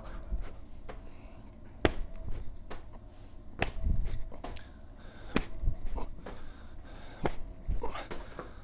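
A medicine ball thrown back and forth between two people and caught, each catch a sharp slap of the ball against the hands, four of them about two seconds apart, with lighter knocks between.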